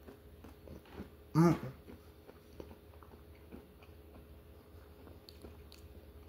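Close-up chewing of a bite of chocolate-coated, nut-topped ice cream cone, heard as faint scattered mouth clicks. About a second and a half in comes a loud hummed "mm-hmm".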